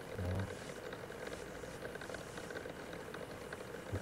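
A brief murmur of a man's voice just after the start, then a steady faint hum from an old desktop computer's cooling fan, heard through a video call.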